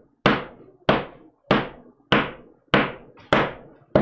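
Sharp knocks in a steady, even rhythm, about three every two seconds, each dying away quickly.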